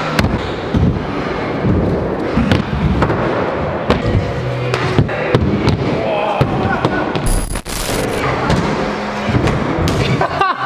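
Stunt scooters and riders knocking and clattering on wooden skatepark ramps and a rail, including a crash on a ramp. Music and voices are mixed in.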